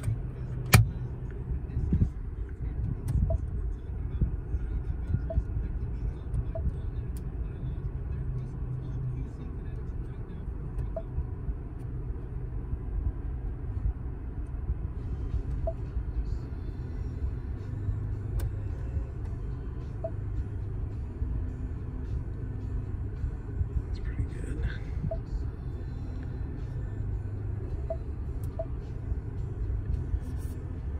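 Steady low rumble inside a car cabin, with a few faint light clicks.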